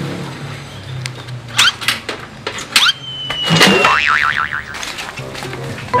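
Cartoon comedy sound effects over background music: several quick rising whistle chirps, then a long falling slide-whistle tone about halfway through, followed by a wobbling boing.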